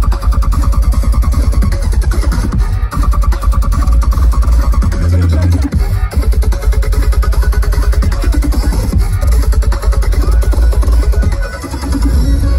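Loud, bass-heavy electronic dance music from a DJ set played over a festival sound system, with a dense, fast rhythm; the volume dips briefly near the end.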